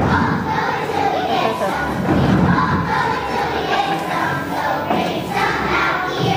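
A large group of kindergarten children's voices shouting loudly together in unison.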